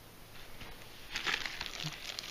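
Clear plastic bag crinkling and rustling as a vacuum pump packed inside it is handled, starting about a second in.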